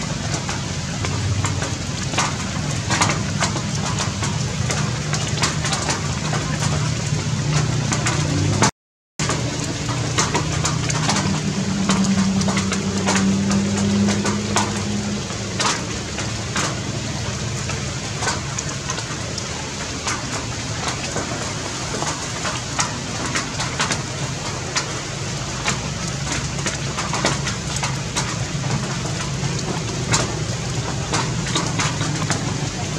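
Steady outdoor background noise: dense crackling and rustling over a low hum, cut off by a brief dropout about nine seconds in.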